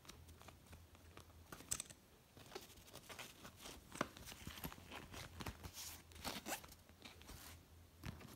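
A fabric backpack being handled, with faint rustling and scattered light clicks from its straps and metal fittings.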